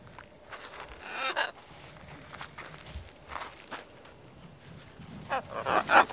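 Blue-and-gold macaw giving one rough squawk about a second in, then wingbeats close by near the end as it flies in to land on an outstretched arm.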